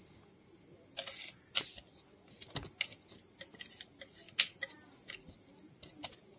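Chopped onion, garlic and chilli paste being mixed by hand in a glass bowl: irregular clicks and short scrapes against the bowl from about a second in.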